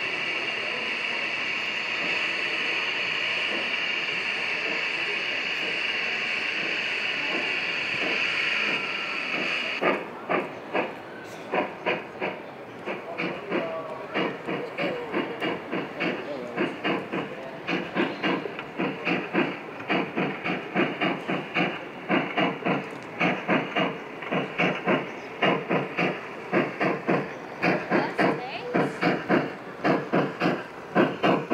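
Gauge 1 model steam locomotive hissing steadily for about ten seconds, then working off with a rhythmic chuffing of about two to three beats a second as it moves along the track.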